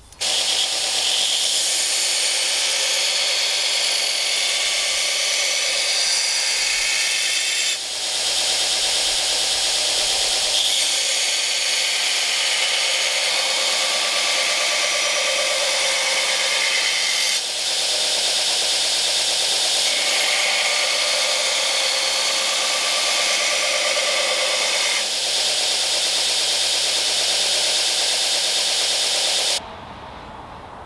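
Belt grinder's running abrasive belt grinding the primary bevel into a steel chef's knife blade: a steady harsh hiss with a low motor hum beneath. It dips briefly about 8, 17 and 25 seconds in and cuts off suddenly just before the end.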